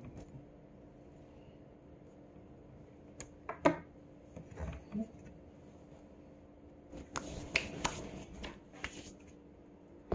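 Kitchen handling sounds: a few sharp clicks and knocks about three to five seconds in, the loudest near four seconds, then a run of light taps and rustles from about seven seconds, as a serrated steak knife is set down on the counter and things on the counter are moved about.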